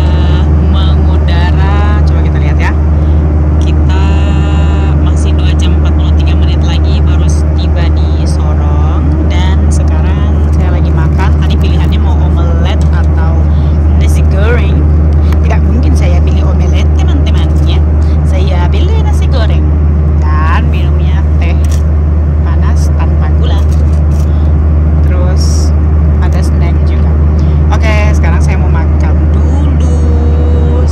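Steady low drone of an airliner cabin in flight, unchanging throughout, with other people's voices talking in the background.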